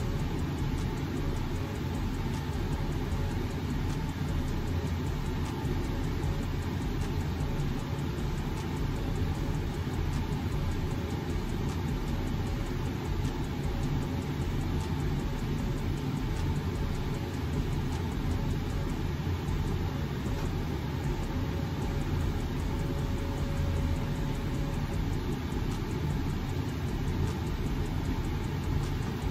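A steady low rumbling background noise with a faint constant hum in it, unchanging throughout.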